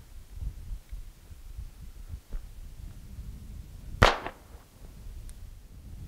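A single shot about four seconds in from a century-old Belgian six-shot pocket revolver chambered in .22 Short: one sharp, sudden report with a brief ringing tail, over a low background rumble.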